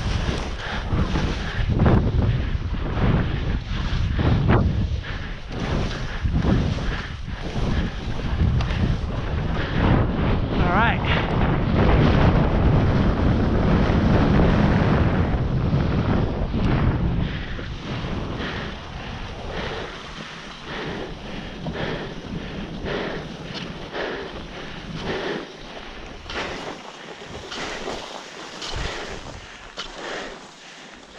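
Wind buffeting the microphone of a body-mounted camera on a moving skier, with skis scraping over the snow. The rush is loudest midway through, then eases into a quieter run of regular ski and pole scrapes.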